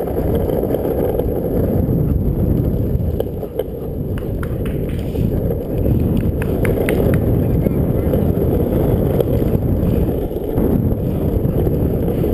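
Longboard wheels rolling over asphalt: a steady, loud low rumble, with a few light clicks in the middle.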